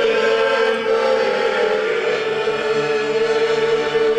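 Men's folk vocal group singing together in long held notes, with an accordion accompanying.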